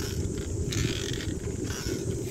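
Wind buffeting the microphone of a camera mounted on a moving bicycle, a steady low rumble, with a stretch of higher hiss in the middle.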